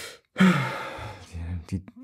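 A man sighs aloud: a breathy exhale with a falling pitch, about half a second long, starting about half a second in, followed shortly by the start of speech.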